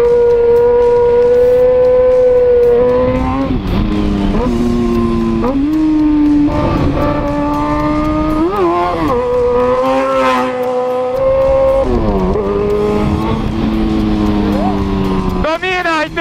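Yamaha XJ6 inline-four motorcycle engine running under way, its note dipping and settling again a few times as the rider rolls on and off.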